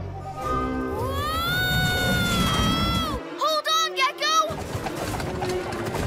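Cartoon soundtrack: a character's long rising cry held for about two seconds, then a wavering, warbling cry as he is spun round, over background music and a low rumbling effect.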